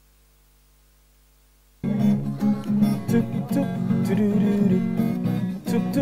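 Near silence with a faint hum, then about two seconds in an acoustic guitar starts strumming a steady rhythmic pattern, the opening of a song.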